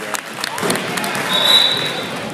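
Basketball being dribbled on a gym floor with voices around, and a short, steady high-pitched squeal about one and a half seconds in.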